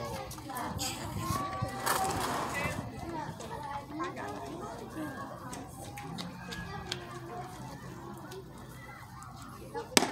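Background chatter of children's and adults' voices, with a single sharp smack near the end as the pitch lands in the catcher's mitt.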